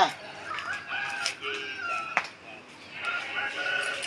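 A rooster crowing twice, each crow a drawn-out call held on a few steady pitches. A single sharp click comes about two seconds in.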